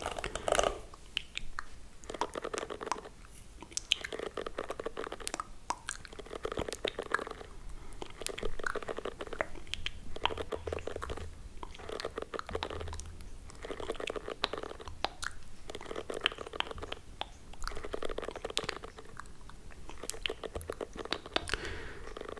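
Plastic bristles of a detangling hairbrush brushed close against the microphone in repeated strokes, about one a second, each a crackly, crunchy scratching, as a mock hair-combing.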